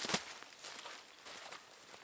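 Footsteps crunching through dry leaf litter and twigs on the forest floor, loudest right at the start and then a few fainter steps.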